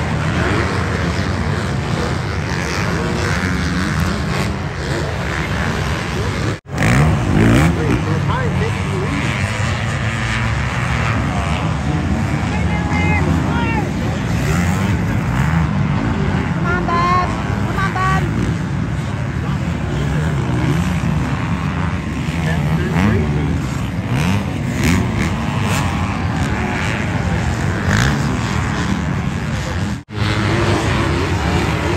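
Many motocross dirt bikes racing on the track together, their engines revving and buzzing over one another, with voices mixed in. The sound breaks off for an instant about six seconds in.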